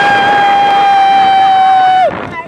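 A rider on a drop-tower ride screaming: one long, loud scream held at a single high pitch, sliding down in pitch as it breaks off at the very end.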